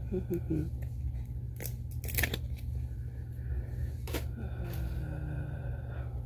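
Trading cards handled and shuffled by hand: a few short crisp slaps and rustles, the sharpest about two seconds in, over a steady low hum.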